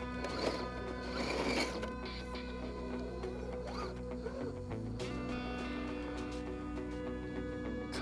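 A 1/10-scale RC rock crawler's electric motor and geared drivetrain whirring steadily as the truck crawls up concrete rubble, with background music underneath.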